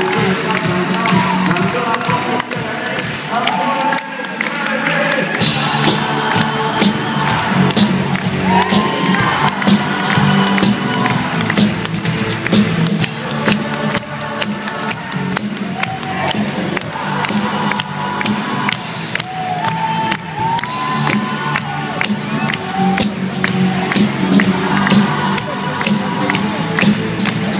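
A live band playing loud music with a steady beat, heard from among the audience, with the crowd cheering over it.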